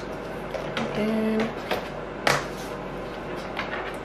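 Plastic clicks, knocks and rustling as the flexible hose and fittings of a new Bissell PowerForce Helix upright vacuum are handled and fitted together, with one sharp click a little past two seconds in the loudest. A short low hum-like tone sounds about a second in.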